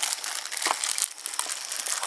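Handling noise of a video camera being passed from hand to hand: rustling and scraping on the microphone, with a few light knocks.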